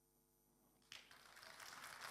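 Near silence, then about a second in an audience begins applauding, the clapping growing louder toward the end.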